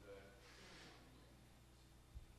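Near silence: room tone with a steady low hum and a brief faint voice near the start.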